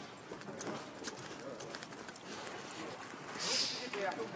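Faint voices murmuring in the background with scattered light clicks and knocks, and a short hiss about three and a half seconds in.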